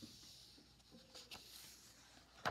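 Near silence: room tone, with a faint paper rustle of a hardcover picture book's page being turned near the end.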